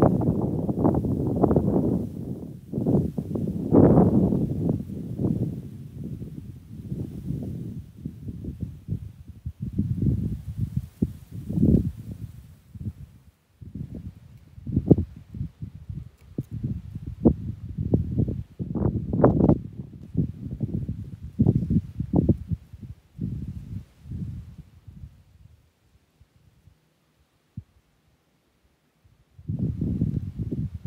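Irregular low thumps and rustling from footsteps on a rocky, loose-soiled bank and the handling of a hand-held camera, with a few sharper knocks. The sound dies away to near silence for a few seconds near the end.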